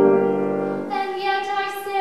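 Female voice singing classical art song with piano accompaniment: a piano chord sounds at the start, and about a second in the voice comes in on a long held note.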